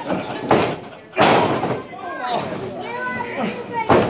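Thuds of a pro-wrestling bout in the ring, a wrestler's body and strikes hitting the canvas, sharp and loud about a second in and again just before the end, among shouting voices of a small crowd.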